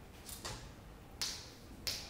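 Chalk striking a chalkboard while writing: three short, sharp taps, roughly two-thirds of a second apart, the last two the loudest.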